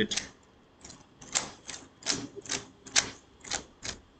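Keys being pressed on a keyboard: about ten sharp, irregularly spaced clicks.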